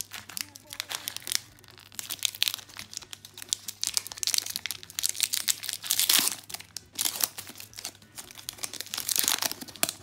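Foil Pokémon booster pack wrapper being torn open and crinkled by hand: a run of sharp crackles, with louder bursts about six and nine seconds in.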